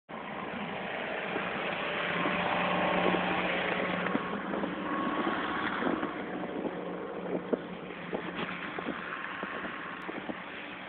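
A steady low engine-like hum under a hiss. Soft, irregular crunches like footsteps in snow come in from about halfway through.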